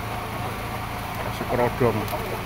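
A steady low mechanical hum under general market background noise, with a man saying a single short word near the end.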